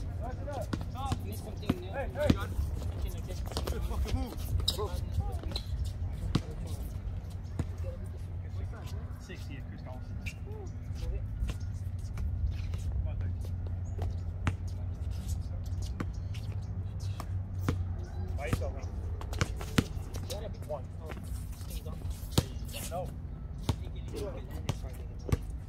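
Basketballs bouncing on an outdoor concrete court: irregular dribbles and thuds throughout, with distant players' voices and a steady low rumble underneath.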